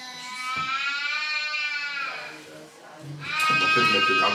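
A young child crying in two long, drawn-out wails, the second starting about three seconds in.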